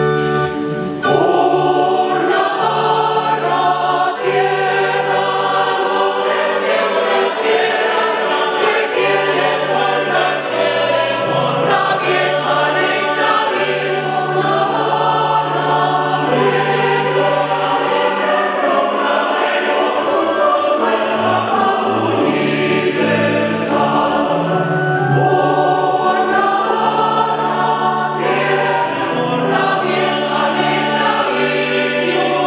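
Mixed choir of women and men singing a sacred piece over sustained organ chords, in a church's reverberant acoustic.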